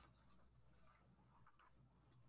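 Near silence: room tone with a steady faint low hum.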